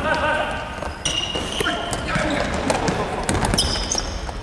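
Futsal shoes squeaking on a wooden gym floor in short high squeals as players run and turn, with scattered ball knocks and players' shouts echoing in the hall.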